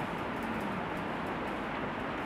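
Steady classroom background noise, with faint light ticks of chalk on a blackboard as a word is written.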